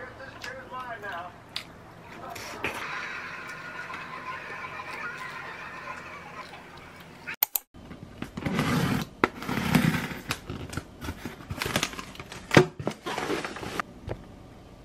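A voice over a quieter first half. Then, after a brief break about seven seconds in, loud, irregular rustling and crinkling of a foil insulated bag and plastic-wrapped snack packets being handled and unpacked.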